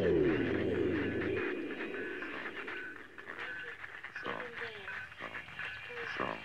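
Sound collage: a falling pitch glide dies away just after the start and a low hum cuts off about a second and a half in, over faint steady high tones. Short snatches of voice-like sound follow near the end.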